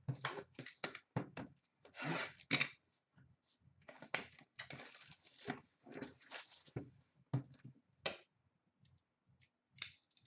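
Cardboard trading-card box being opened by hand: scratchy tearing and scraping of the cardboard and seal, with scattered sharp clicks and taps as it is handled and turned. Longer tearing spells come about two seconds in and again from about four and a half to six and a half seconds, and it goes nearly quiet near the end.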